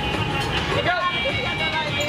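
Amusement-park ride machinery rumbling under fairground music and voices, as a slingshot ride starts to launch its seat near the end.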